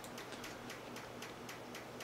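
Faint, rapid, even ticking, several ticks a second, keeping a steady rhythm.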